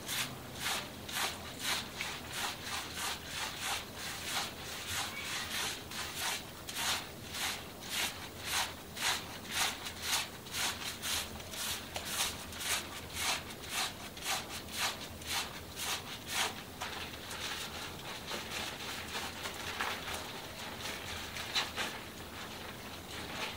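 Fingers scrubbing shampoo lather through long wet hair and over the scalp, in a rhythmic run of about two strokes a second. The rubbing becomes more even and continuous in the last few seconds.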